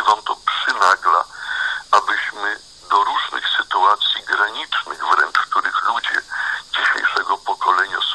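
Continuous speech with the sound of a radio broadcast.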